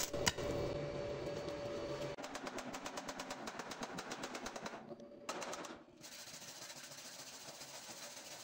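A stick-welding arc crackles on a tack weld with a 2.6 mm E6013 rod for about the first two seconds. It stops, and a hand-held steel wire brush scrubs slag off the tack welds in fast, rhythmic strokes, turning to a steadier scrubbing near the end.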